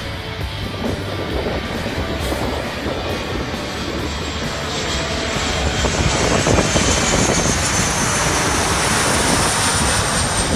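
Four-turbofan BAe 146-type jet air tanker on landing approach with its gear down, its engines growing louder from about halfway through as it passes low overhead, with a high whine over the rumble.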